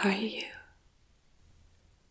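A woman's short, breathy spoken utterance lasting about half a second, then quiet room tone.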